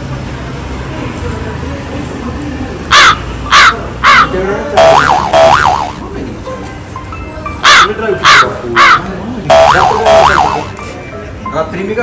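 Loud bird calls in two identical runs about five seconds apart, each run three short calls followed by two longer ones. They stand well above a low background.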